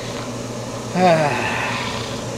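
Motorhome air conditioner running with a steady hum. About a second in, a short voice sound falls in pitch.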